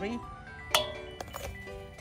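A single sharp metal clink about three-quarters of a second in, a spoon striking the stainless steel mixing bowl, with a short ring after it. Background music plays throughout.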